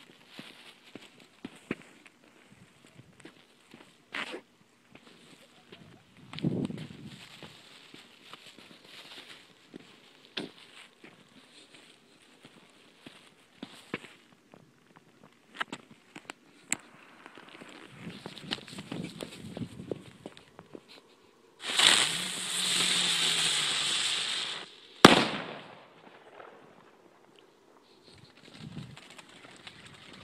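New Year's fireworks: scattered firecracker pops and distant reports, then a firework hissing for about three seconds, ended by one sharp, loud bang.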